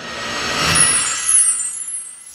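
Whoosh sound effect for a spinning logo animation: a rush of noise that swells, sweeps upward in pitch, peaks about a second in and fades near the end.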